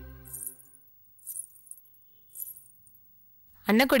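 Background music fades out in the first half-second. Then jewellery jingles three times, about a second apart, short and bright. A woman's voice comes in at the very end.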